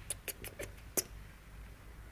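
Five quick, squeaky lip-kissing sounds in the first second, the loudest about a second in, the kind made to coax a cat.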